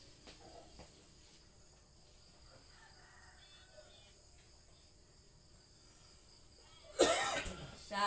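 A woman coughs once, loudly, about seven seconds in, after several seconds of quiet room tone with only faint small noises and a steady high hiss.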